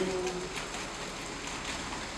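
Steady, even hiss of background noise in the hall, with the tail of a man's amplified voice fading out in the first half second.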